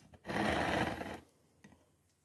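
Paper magazine pages rubbing and sliding under a hand as the magazine is handled, a single dry rustle lasting about a second, followed by a faint click.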